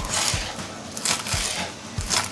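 Kitchen knife chopping chou kanak (island cabbage) leaves on a plastic cutting board: several separate cuts, each a short crunch of leaf and a tap of the blade on the board.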